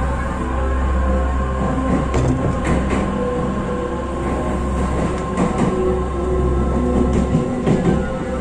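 An electric commuter train running, heard from on board as it moves through a station: a steady low rumble with a few sharp clicks. Background music plays over it.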